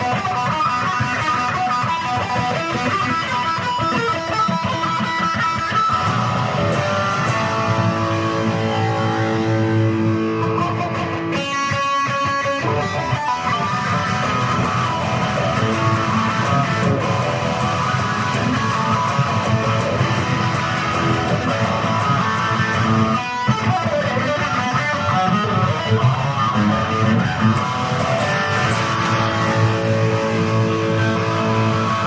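Solo electric guitar playing improvised riffs, mixing picked lines and strummed chords, with a few long held notes about a third of the way through.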